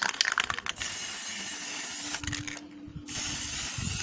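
Aerosol spray paint can hissing in two bursts, with a short break in the middle. A quick run of clicks comes at the very start.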